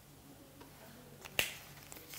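A single sharp click from a whiteboard marker about one and a half seconds in, with a couple of fainter ticks just before it, over a faint steady room hum.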